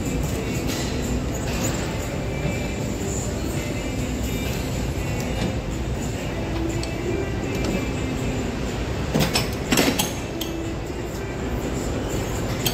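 Gym background music over a steady hum of room noise. A short cluster of sharp metallic clanks a little past nine seconds in, from the weight machine being let go.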